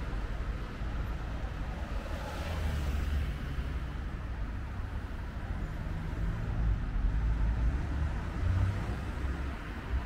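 Road traffic: a steady low rumble of passing cars, with one vehicle swelling up and going by about two to three seconds in.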